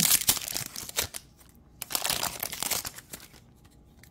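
Plastic wrapper of a Panini Prizm basketball card pack being torn open and crinkled, in two bursts: one through the first second and another about two seconds in, after which it stops.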